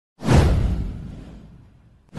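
Intro whoosh sound effect with a deep boom underneath. It starts suddenly about a quarter second in and fades away over the next second and a half.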